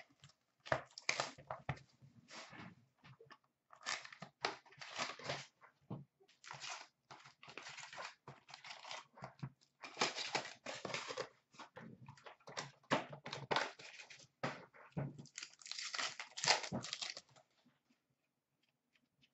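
Cardboard hockey card box and card pack wrappers being torn open and crinkled by hand, in irregular bursts of tearing and rustling that stop shortly before the end.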